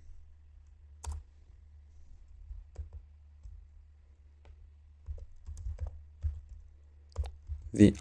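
A few scattered keystrokes on a computer keyboard, single sharp clicks spaced out over several seconds, over a faint steady low hum.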